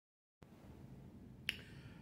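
Faint room tone with one sharp click about one and a half seconds in.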